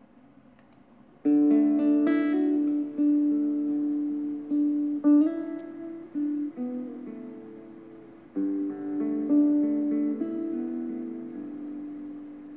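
Background music on acoustic guitar, starting about a second in with a strummed chord. It goes on in slow phrases of ringing, sustained notes, with fresh chords about five and eight seconds in.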